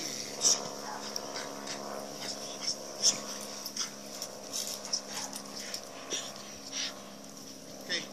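A protection-trained working dog, held back on a leash, making excited whining and vocal sounds while being agitated in bite work, with many short sharp sounds and two loud sharp ones about half a second and three seconds in. A steady hum and a high hiss sit underneath.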